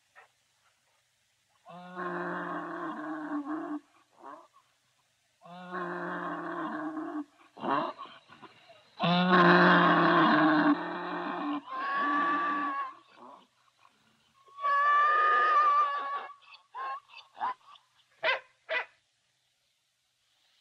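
A series of long, drawn-out cries at a steady pitch: about five lasting one to two seconds each, then a few short calls near the end.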